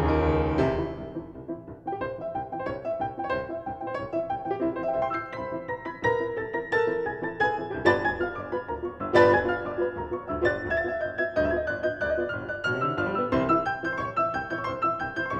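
A piano duo playing a fast classical piece. A loud held chord dies away in the first second, then quick, detached notes follow in a steady driving rhythm, with a sharp accented chord about nine seconds in.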